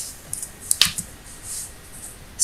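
Low background noise with a few small ticks and one sharper click a little under a second in.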